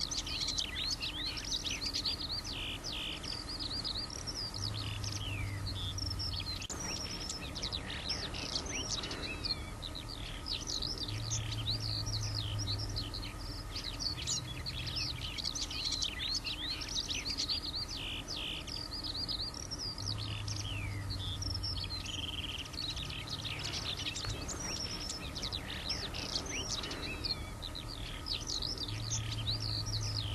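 Eurasian skylark song: a fast, unbroken stream of high trills and chirps. Underneath is a low, steady hum of distant road traffic.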